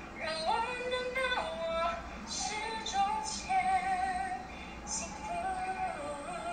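Recorded female singing played back through a speaker: a woman's voice holding long notes with vibrato, stepping up and down in pitch.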